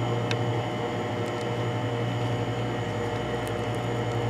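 Steady low hum with an even background hiss, and a few faint clicks.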